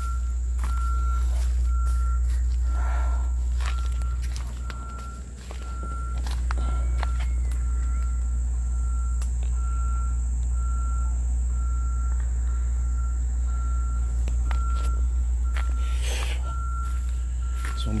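Insects chirring outdoors: a steady high-pitched drone with a separate chirp pulsing about twice a second, over a constant low rumble on the microphone. Scattered footsteps and brushing clicks.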